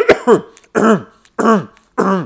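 A man clearing his throat with harsh, forceful hacks, about three in quick succession, each sliding down in pitch. This is the repeated throat-clearing people do when phlegm collects in the throat.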